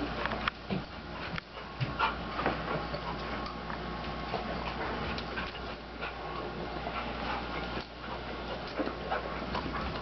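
A dog moving about close by, with scattered short clicks and scuffs over a steady low hum.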